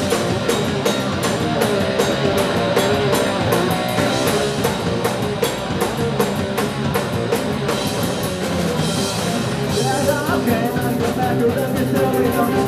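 Live rock band playing amplified electric guitars, bass guitar and a drum kit with a steady beat, a singer's voice over the top.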